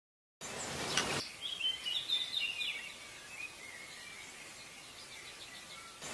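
A short rush of noise, then birds chirping, with the chirps thinning out and growing fainter over a low hiss.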